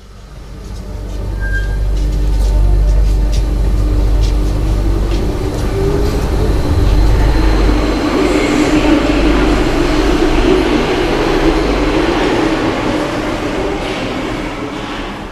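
Paris Métro MF77 train pulling out of the station and accelerating past the platform. The rumble builds over the first couple of seconds and stays loud, and a whine from the running gear joins it about halfway through.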